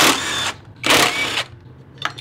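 Cordless impact wrench with a T40 Torx socket loosening the front brake caliper bolts of a Honda Click 125i scooter, running in two short bursts of about half a second each.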